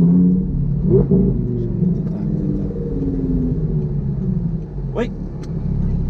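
Audi R8 engine running at low revs as the car rolls slowly, a steady low rumble of engine and road noise that dips slightly just before the end.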